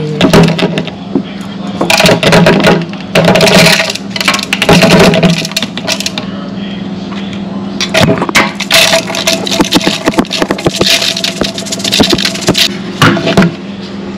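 Rinsed rice being shaken and tapped out of a metal mesh strainer into a plastic measuring cup: rattling, scraping bursts of a second or less, repeated about six times, over a steady low hum.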